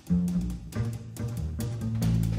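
Live jazz: an upright double bass plucking a run of low notes, about five in two seconds, with drums and cymbals struck along with it.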